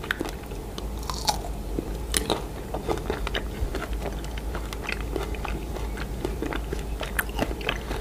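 Close-up chewing of a chocolate-coated strawberry: the crisp coating crunches in many small, irregular crackles as it is chewed with the mouth closed.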